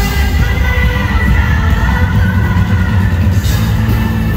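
Live band music played loud through an arena sound system, heard from among the audience, with a heavy, booming bass.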